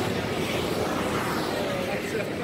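Steady outdoor crowd noise: a dense wash of sound with indistinct voices talking.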